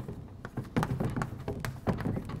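Chalk tapping and scraping on a blackboard as handwritten letters are written: a quick, irregular run of sharp taps.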